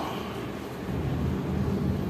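Steady hiss of heavy rain with a low thunder rumble that swells about a second in.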